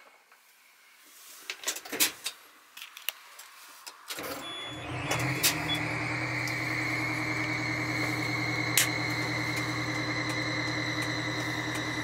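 A few switch clicks, then about four seconds in the 1989 Pierce Javelin fire truck's Cummins diesel engine starts and settles into a steady idle. A thin high whine, slowly dropping in pitch, sits over the idle.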